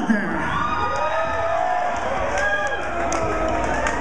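Concert crowd cheering and shouting with no music playing, several voices calling out in long rising-and-falling shouts over a steady din.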